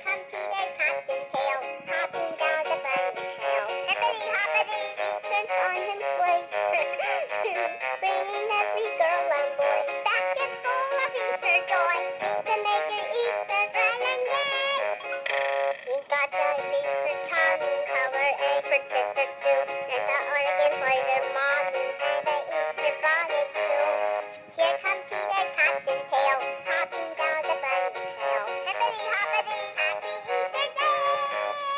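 Battery-powered animated singing plush toy playing a song, a synthetic singing voice over backing music from its small built-in speaker. The song starts right at the beginning and runs on, with a brief dip about two thirds of the way in.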